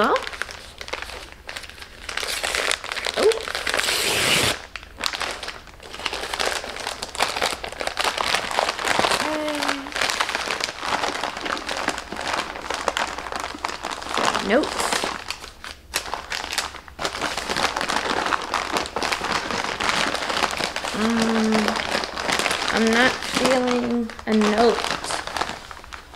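Packaging being unwrapped by hand: dense, irregular crinkling and rustling that goes on almost without a break, with a short pause a little past halfway. A few brief murmured vocal sounds come through over it.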